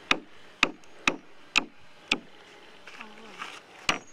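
Hammer driving nails into a plywood board, sharp blows about two a second: five strikes, a pause of nearly two seconds, then another near the end.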